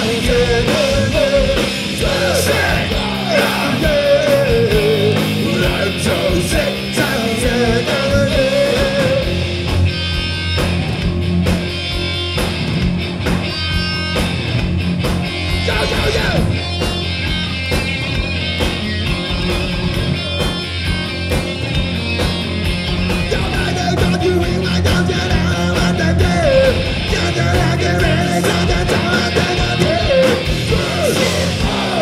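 Live punk-metal band playing loud: distorted electric guitar, bass guitar and drum kit. A man's shouted, held vocal lines wail over the band through about the first nine seconds and come back from about 23 seconds to the end.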